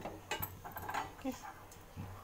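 A few light metallic clicks and taps from a small steel tadka ladle on a gas stove's burner grate.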